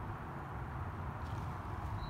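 Faint, steady background noise with no distinct events.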